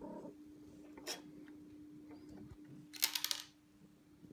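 A cat moving right up against the microphone, with soft rustling and a short scratchy brush about three seconds in.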